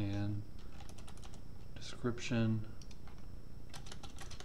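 Computer keyboard typing: two short runs of quick keystrokes, one about a second in and one near the end, as a word of code is typed.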